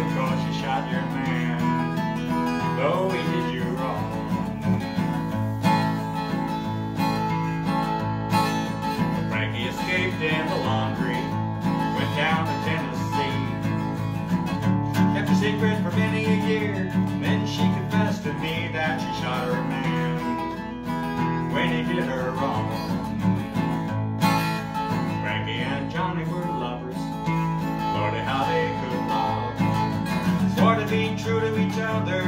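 Solo acoustic guitar playing an instrumental passage without singing, strummed and picked in a steady country-style rhythm.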